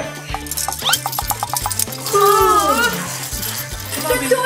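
A plastic baby rattle shaken in a quick run of about eight strokes a second over background music with a steady bass beat. About two seconds in comes a long sliding tone falling in pitch.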